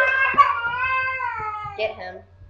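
A single high female voice holds one long sung note that slowly slides down in pitch as the backing music cuts off, then a short vocal sound near the end.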